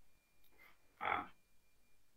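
A single short, throaty vocal sound from a person's voice, about a second in, heard over a video-call audio feed; otherwise the room is quiet.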